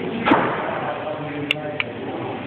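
A chinchilla moving about its wire cage: a thud about a third of a second in, then two short sharp clicks a little over a second later.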